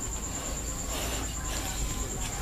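Room tone between spoken instructions: a steady low hum with a constant faint high whine, and a soft hiss about a second in.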